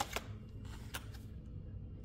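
Cardboard-and-plastic gel nail strip packs being handled on a countertop: a sharp click at the start, then a few faint ticks and rustles as one pack is picked up.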